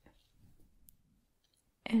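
Soft faint handling rustle over an open paper book with a small tick, fading into near quiet, then a whispered word starts just before the end.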